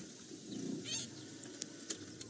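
A brief, faint animal call about a second in, over a quiet steady background, with a single light click a little later.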